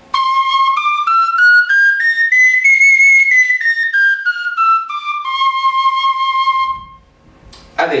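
Sicilian friscalettu in C, a small cane duct flute, playing a C major scale one octave up and back down, note by note in clear, high, steady tones. The final low note is held longest and stops about a second before the end.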